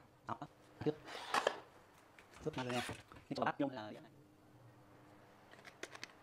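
Light clicks and rustles of bamboo chopsticks handling sea grapes on a plate, broken by a few brief murmured words.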